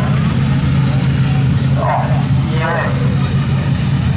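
Speedway race car engine running at low, even revs, a steady low drone, as the car circles slowly on the dirt track. A public-address announcer's voice comes over it briefly about halfway through.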